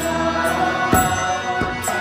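Devotional bhajan music: sustained reed-organ tones with chanting, two drum strikes about a second in, and bright hand-cymbal chings.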